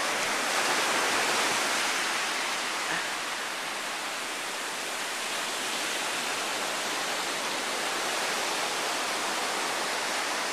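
Surf washing in over a flat sandy beach: a steady, even hiss of breaking waves and shallow water, a little louder in the first couple of seconds.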